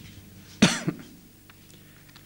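A man's short cough about half a second in, close to the microphone.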